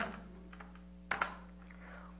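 Faint taps of a pen as a sum is worked out, with one short, slightly louder click about a second in, over a low steady hum.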